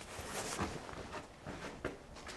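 A few faint footsteps on stone paving, with soft scuffs and a small click near the end.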